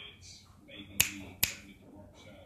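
Two sharp finger snaps about half a second apart, calling Yorkie puppies over.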